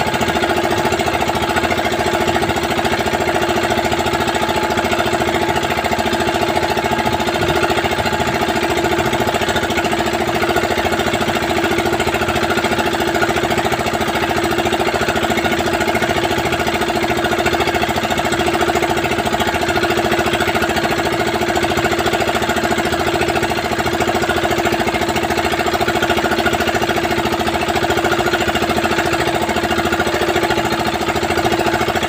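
Fishing bangka's engine running steadily under way, with a fast, even beat that holds without change.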